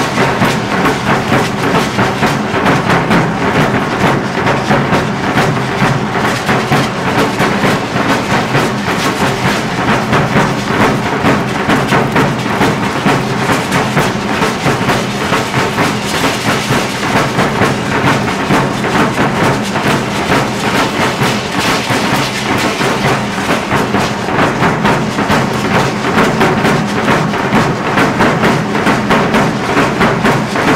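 Marching drums played in a fast, steady dance rhythm for a danza apache, with sharp wooden clacks from the dancers' bows keeping time throughout.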